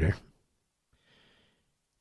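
A man's voice trails off, then a pause broken by one faint, short intake of breath about a second in, before he speaks again.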